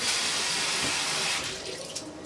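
Bathroom sink tap running water onto a bristle hairbrush to wet it. The water comes on suddenly and fades out about a second and a half in.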